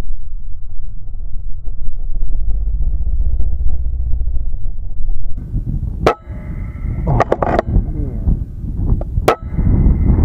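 Wind buffeting the microphone as a low rumble. Then two sharp cracks about three seconds apart, the first about six seconds in: air rifle shots at prairie dogs.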